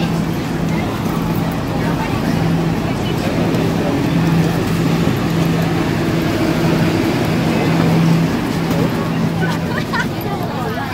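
A subway train running, heard from inside a crowded carriage: a steady low hum that briefly drops out a few times, over a continuous rumble, with passengers' voices murmuring.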